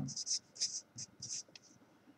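Marker pen writing on paper: a quick series of short, high-pitched scratchy strokes as characters are written.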